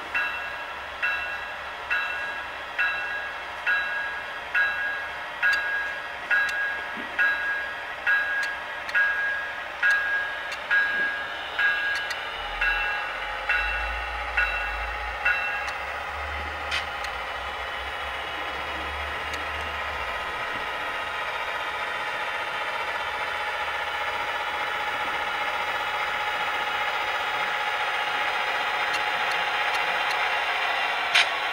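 Model diesel locomotive sound decoder playing through a small onboard speaker: a locomotive bell rings about once a second for roughly the first half. Then the diesel engine sound carries on alone, slowly growing louder.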